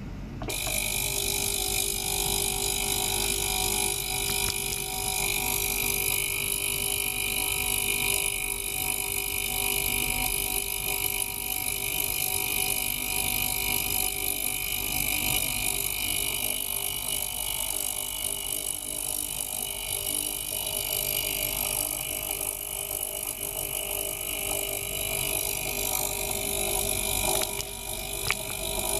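Small ultrasonic cleaner switched on about half a second in, its water tank giving a steady hissing buzz with several high, even tones over it; it stops just before the end.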